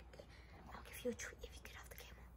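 A person whispering faintly in short fragments.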